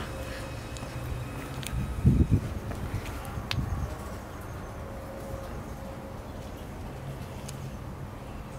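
Steady outdoor background hum with a faint steady tone over it, broken by a short low rumble about two seconds in and a smaller one a second and a half later.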